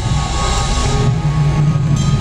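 Live R&B band music played loud through a concert PA system, heavy on the bass and steady throughout.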